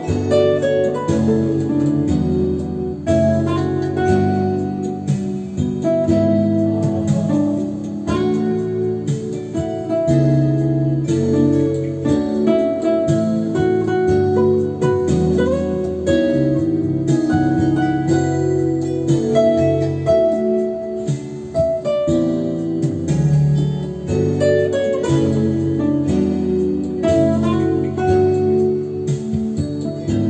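Nylon-string classical guitar played fingerstyle: a continuous instrumental passage of plucked melody notes over bass notes and chords.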